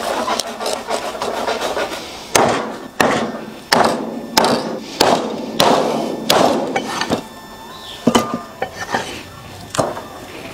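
Meat cleaver chopping through lamb ribs onto a thick round wooden chopping block. About eight hard, evenly spaced chops start a little over two seconds in, roughly one every two-thirds of a second, and a few lighter chops follow near the end.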